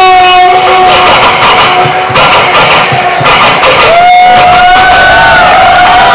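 A man beatboxing into a handheld microphone cupped in both hands: a long hummed note that wavers and glides in pitch, over sharp drum-like clicks and hits.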